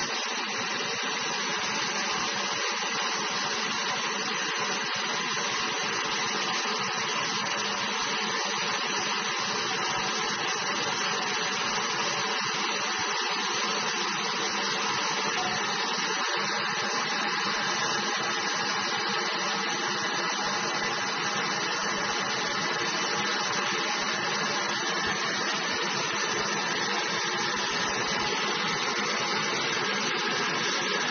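Water running steadily from a tap into a filled sink basin, an even rushing hiss that does not change.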